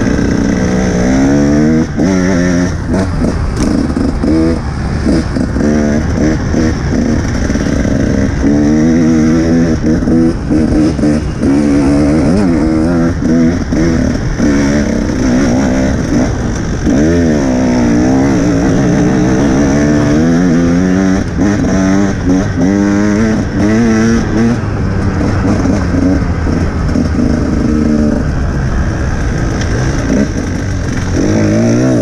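Dirt bike engine under hard riding, its pitch rising and falling again and again as the throttle is opened and closed, with brief dips between bursts of revs.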